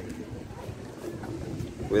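Wind buffeting the microphone outdoors, a low, uneven rumble.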